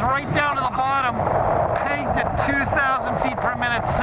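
A man's voice over the steady rush of wind past an open microlight trike diving in a steep spiral with its engine off; the wind grows louder about a second in.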